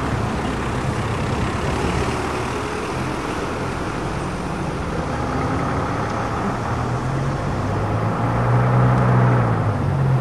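A vintage bus engine running, with road and traffic noise; the engine hum grows louder over the last couple of seconds.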